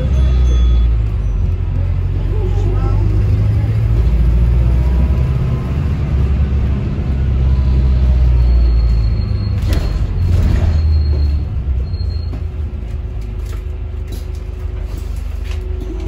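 Inside a Volvo B5LH hybrid double-decker bus under way: a low engine and drivetrain rumble with road noise, rising and falling. Around ten seconds in come a few knocks and a thin high whine, after which the rumble eases as the bus slows.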